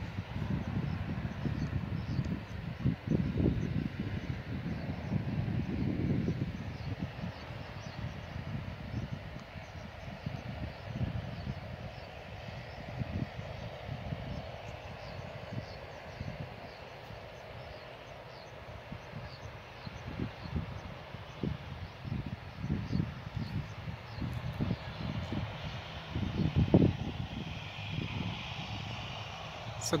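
Wind buffeting the microphone in irregular gusts, over a faint steady hum of distant aircraft engines running on the airstrip.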